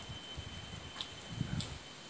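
Quiet outdoor background with a faint, steady high-pitched tone and a few soft taps, about a second apart.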